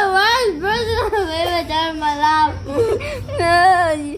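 A child's high-pitched voice drawn out in long, wavering whines, without words: one lasting about two and a half seconds, then a second near the end.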